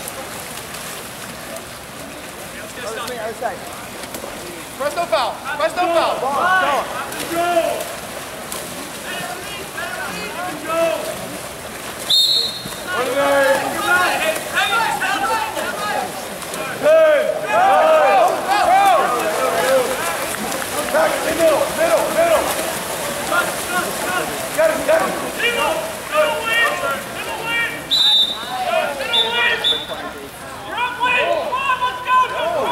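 Spectators shouting and calling out over one another during a water polo game, with players splashing in the pool. Two short, shrill referee's whistle blasts sound, about twelve seconds in and again near the end.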